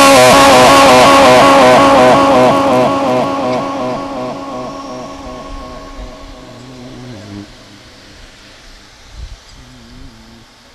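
A man's voice reciting the Qur'an in melodic tajweed style, amplified through a sound system with heavy echo: one long closing note with an even wavering ripple, held loud for about two seconds, then fading away over about five seconds until only faint room noise is left.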